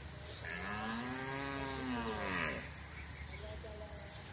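A cow lowing: one long moo, starting about half a second in and lasting about two seconds, rising and then falling in pitch. An insect's steady high trill sounds at the start and again near the end.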